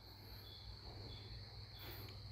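Faint background noise: a steady high-pitched chirring like crickets or other insects over a low hum.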